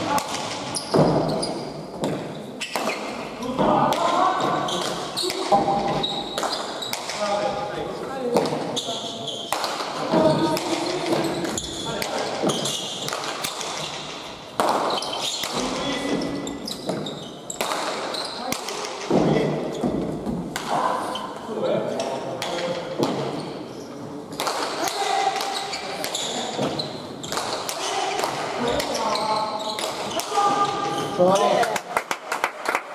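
Hand pelota rally: the hard ball cracks off bare hands and the front wall every second or two, each hit echoing through the hall.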